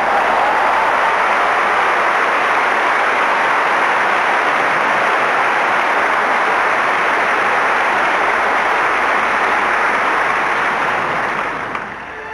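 Large concert audience applauding steadily after a song, the applause dying away near the end.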